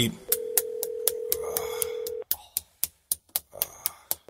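A telephone line tone: one steady tone sounds for about two seconds and then cuts off, while a sharp, even ticking of about four a second runs underneath.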